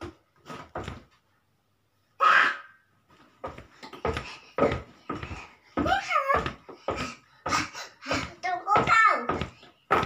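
A young child babbling and vocalizing without clear words, in short bursts, with the pitch sliding up and down around the middle and again near the end.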